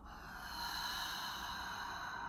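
A woman breathing out slowly and steadily through her mouth, one long exhale of a deep-breathing exercise.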